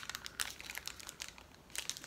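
Plastic snack wrapper crinkling as it is handled, a run of irregular small crackles.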